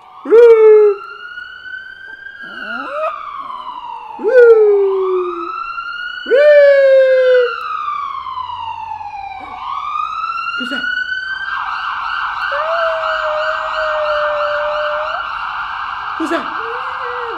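Ambulance siren sound effect played back: a slow wail rising and falling every couple of seconds, switching to a fast warbling yelp about eleven seconds in. Three loud, short falling cries break in over the wail in the first seven seconds.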